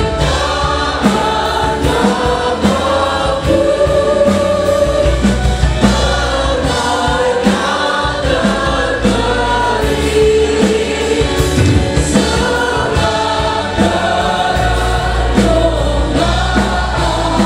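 A mixed group of voices singing an Indonesian-language Christian hymn, led by a woman's voice, with a live band of drums, electric guitar, bass guitar and keyboard keeping a steady beat.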